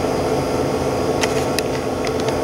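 Steady mechanical hum of room background noise, like an air-conditioning or fan unit running. A few faint clicks come a little over a second in.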